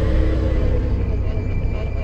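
A deep, low rumbling trailer drone that slowly fades, with a thin, high, steady tone coming in about halfway.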